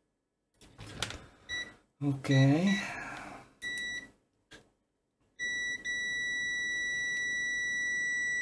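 UNI-T UT139C multimeter's continuity beeper: a few short beeps as the probes touch, then a steady high beep from a little past halfway, as the meter reads about 2.9 ohms across a diode that looks shorted.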